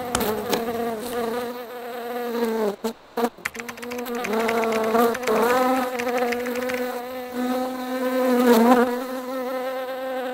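Honeybee buzzing: a steady low hum whose pitch wavers and swoops upward a few times, breaking off briefly about three seconds in.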